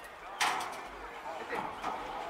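A single sharp metallic bang about half a second in, from the steel horse-racing starting gate, with a short ring after it. Voices chatter in the background.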